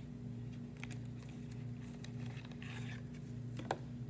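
Faint handling of a Narcan (naloxone) pre-filled syringe package as it is opened and the vial taken out: a few soft clicks and a brief rustle, the sharpest click near the end, over a steady low hum.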